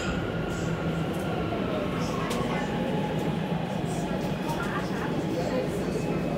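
Steady running noise of a Shenzhen Metro Line 3 train heard from inside the carriage, a continuous rumble with a low hum and faint whine, with faint passenger voices mixed in.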